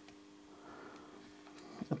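Faint room tone with a low steady hum, in a pause between speech.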